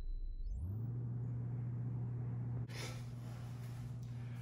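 A steady low hum, with a fainter overtone, that sets in about half a second in as a low rumble fades out; a faint hiss joins it a little past halfway.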